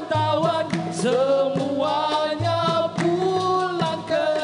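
A male lead singer sings a Malay song in Dikir Barat style into a microphone, in a wavering, ornamented vocal line. A low percussion stroke sounds underneath about every two seconds.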